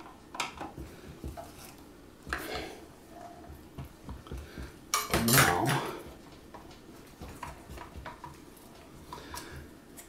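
Screwdriver turning a screw into a clear plastic robot collar, and hands shifting the collar on its Lazy Susan bearing: scattered small clicks, taps and rubs of plastic and metal, with one louder, longer rub about five seconds in.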